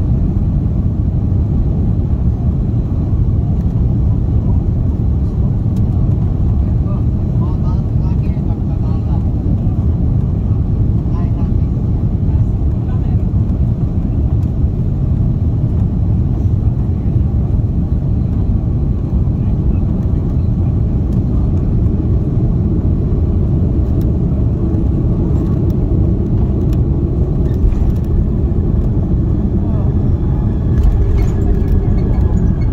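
Airbus A330-300 cabin noise from a seat over the wing on final approach and landing: a steady, loud low rumble of the jet engines and rushing air. It carries on as the airliner touches down and rolls along the runway, with a few faint clicks and knocks near the end.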